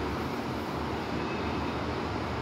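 Steady background noise: a low rumble with hiss and no distinct events.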